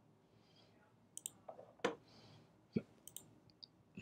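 Faint, irregular computer mouse clicks: about eight short clicks scattered from about a second in, with near silence between them.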